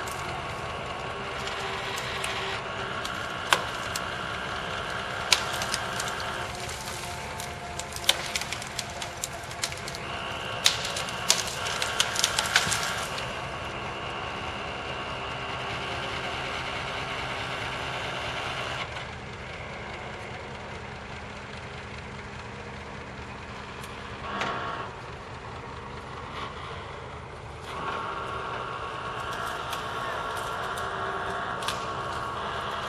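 Engine of a tree-clearing machine with a hydraulic grapple crane running steadily as it handles cut brush, with sharp cracks of snapping wood from a few seconds in until about halfway through. Later its note drops lower and a little quieter for several seconds, then rises again near the end.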